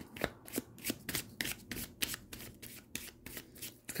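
A deck of tarot cards being shuffled by hand: a quick, irregular run of soft card slaps and riffles, about three or four a second.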